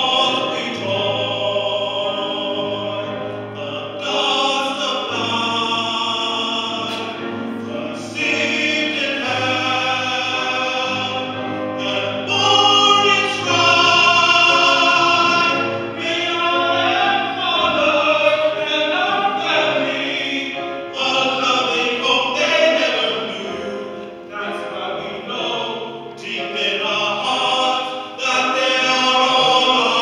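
Tenor voices singing a ballad in long held notes with vibrato, backed by a choir and a string ensemble.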